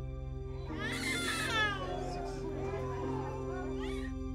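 A small child crying: one long wail falling in pitch from about a second in, and a second cry starting near the end, over soft ambient music with sustained tones.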